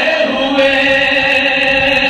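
A man's voice reciting a nazm in a melodic, chanting style into a microphone, holding one long steady note.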